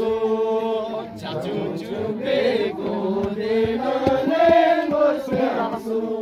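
Unaccompanied group singing: several voices together in long, held notes that slide in pitch, in a slow traditional chant-like song.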